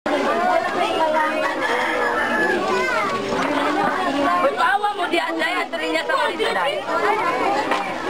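A crowd of children chattering, many voices talking over one another without a break.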